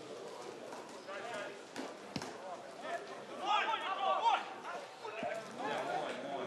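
Voices calling and shouting across a rugby pitch during play, loudest in a burst of raised calls around the middle, over a background of outdoor chatter.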